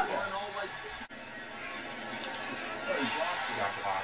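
Faint television broadcast audio: a voice talking with music underneath, well below the level of the room's cheering.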